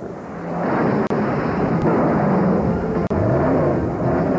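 A film soundtrack of a vehicle engine running under heavy noise, its pitch shifting in the middle, with two brief dropouts at edits.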